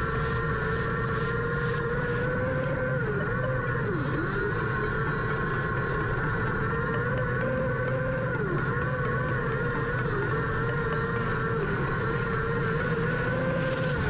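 Micro sprint car's motorcycle-based engine running hard at high revs. Its pitch dips briefly about four times as the throttle is lifted for the turns of the dirt oval.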